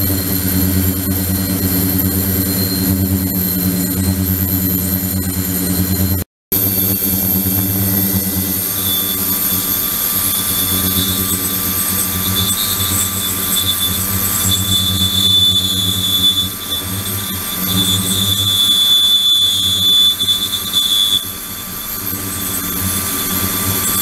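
Ultrasonic tank with water circulating through it, running steadily: a low hum with a thin high whine over it. The sound drops out for a moment about six seconds in. From about nine seconds a higher whistling tone joins and grows, then stops shortly after twenty-one seconds.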